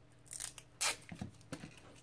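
Silver duct tape being pulled off its roll: a few short ripping noises, the loudest just under a second in, followed by smaller crackles of the sticky tape.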